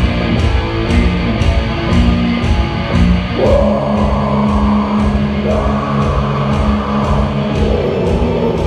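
Black metal band playing live: heavily distorted guitars hold long low chords over drums, with cymbal strikes about two to three a second. Harsh vocals come in about three and a half seconds in.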